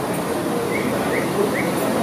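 Dining-room background: a steady hum with faint distant chatter, and a small bird chirping three times in quick succession about a second in.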